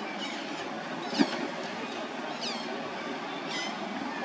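Short, high-pitched animal calls that sweep downward, repeating about once a second, over steady outdoor background noise. A single sharp thump comes a little over a second in.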